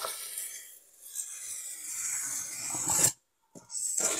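A small knife drawn along a metal ruler across an expanded polystyrene (EPS) foam board, scoring a marking line: a scratchy rasp with a brief break near one second, growing louder and stopping sharply just after three seconds.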